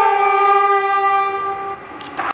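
Two fiddles bowing the long held final note of a fiddle tune together, ending it with a fade about three-quarters of the way through.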